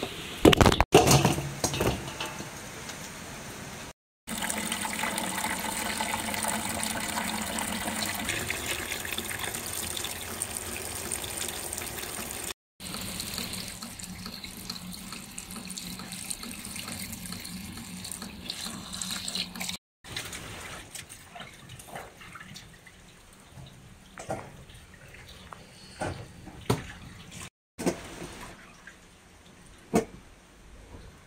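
Tap water running onto screw peppers in a steel bowl as they are washed, in several short takes. A loud knock comes about a second in, and the last stretches are quieter handling with scattered light clicks.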